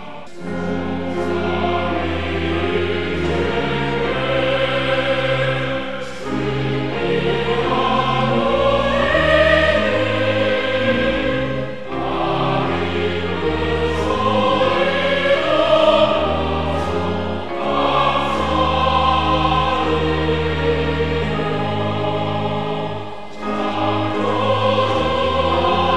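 Church congregation singing a hymn together in Korean, with instrumental accompaniment holding long, steady low notes. The singing pauses briefly between phrases about every six seconds.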